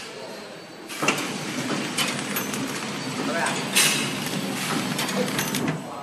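Horizontal flow packing machine wrapping cleaning sponges: a steady mechanical clatter with several sharp clicks and knocks. It starts up about a second in and drops away near the end.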